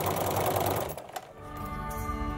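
Home sewing machine with a walking foot running steadily, stitching a straight quilting line through the layers of a quilt, then stopping about a second in. Background music comes in soon after.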